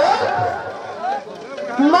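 A woman's voice amplified through a microphone and PA, delivering a kirtan line that trails off into a short lull, with a new phrase starting just before the end.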